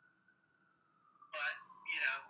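A pause, then a few short words of a person's voice about a second and a half in. A faint thin tone drifts slowly up and down in pitch underneath.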